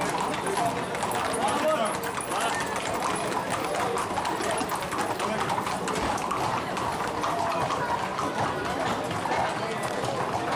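Hooves of a group of ridden Camargue horses clip-clopping at a walk on a paved street, many hoofbeats overlapping throughout. People are talking around them.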